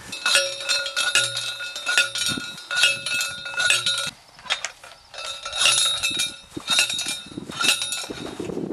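Hand post driver clanging down on the top of an eight-foot copper ground rod as it is driven into the ground: a series of metallic strikes about one a second, each leaving the rod ringing, with a short pause midway.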